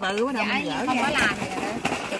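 People talking, their voices filling most of the moment, over a steady low hum, with a sharp click near the end.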